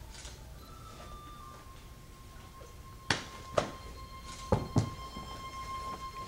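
Four sharp smacks from kung fu practitioners' hand and foot strikes during a form, in two pairs about halfway through, over a faint steady high tone.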